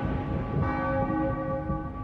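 Church bell ringing, its tone slowly dying away, with a fresh strike a little over half a second in.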